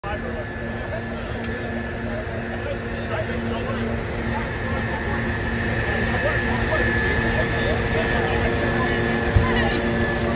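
Fire trucks' diesel engines running steadily, a low rumble with a constant humming drone, under the indistinct chatter of many firefighters' voices; a single sharp knock just before the end.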